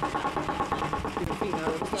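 A small shot bottle knocked upside down against a wooden tabletop again and again: a rapid run of light knocks, with voices in the background.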